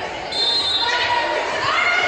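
High-pitched girls' voices calling out and cheering in an echoing gym, rising into one drawn-out shout near the end, as a volleyball serve is about to be struck.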